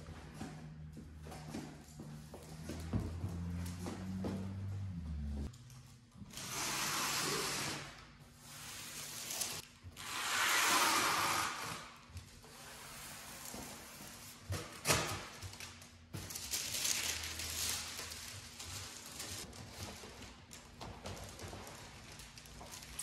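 Vinyl banner being swept and smoothed by hand onto a foam insulation board coated with spray adhesive: three rustling swishes of about two seconds each, the middle one loudest. Background music plays under the first few seconds.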